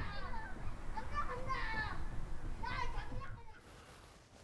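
Faint, indistinct background voices, high-pitched like children's, chattering in short snatches and dying away after about three seconds.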